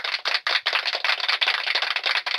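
Rapid, rasping scratching noise from a hand rubbing through hair close to a studio microphone. It stops shortly after it ends here.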